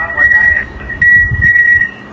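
Pan-tilt security camera's motor whining as it turns the camera, a steady high-pitched whine that breaks off briefly about a second in and again near the end as the movement stops and restarts.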